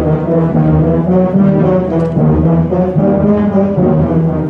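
A concert band playing, led by low brass such as tubas and trombones, with full ensemble chords whose notes shift every fraction of a second.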